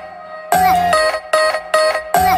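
Outro background music: a quick melody of short, bright notes, starting up again after a brief lull at the start.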